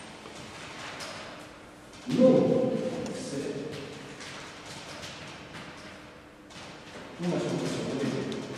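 A man's voice making short, indistinct vocal sounds, one starting about two seconds in and another near the end, each fading away, with faint light clicks in between.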